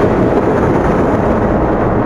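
Thunder rumbling steadily and heavily: a storm sound effect.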